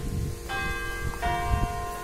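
Church bell ringing, two strokes about half a second and a little over a second in, each leaving several steady tones hanging.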